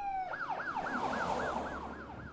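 Police car siren: a short falling tone, then a fast up-and-down yelp at about four cycles a second.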